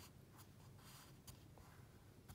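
Faint scratching of a pencil lead on paper as a character is written in a few short strokes.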